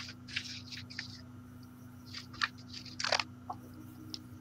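Scattered short rustles and crackles, about a dozen brief noises, the loudest a little after three seconds in, over a steady low hum.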